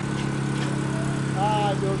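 A steady low mechanical hum that holds an even pitch throughout. A faint distant voice comes in briefly about one and a half seconds in.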